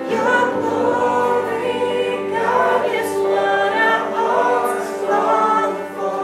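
Live worship song: a woman singing lead through a microphone and PA over electric guitar, with a group of voices singing along in sustained phrases.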